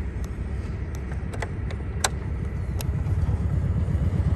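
A few sharp clicks over a steady low rumble, as the Honda Super Cub's ignition is switched on. The rumble grows louder in the last second.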